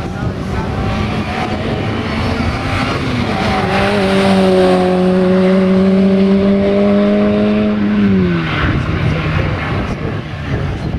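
Peugeot 106 rally car's four-cylinder engine running hard at high revs, its pitch held steady for several seconds, then dropping about eight seconds in as the engine comes off load.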